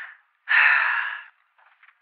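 A man's single heavy breath into the microphone, lasting just under a second. It sounds thin, with no low end.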